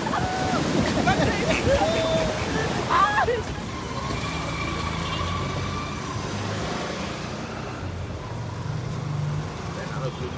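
Surf washing up on a beach with people calling out over it; about three and a half seconds in this gives way to a steady low hum of a vehicle engine running.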